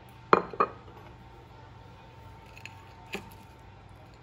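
Kitchen utensils knocking against dishware: two sharp clinks close together, then two fainter taps near the end.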